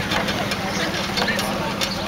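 Engine of the vehicle towing a ride-on wagon train, running steadily at a slow cruising pace with a low, even hum, while people's voices carry faintly over it.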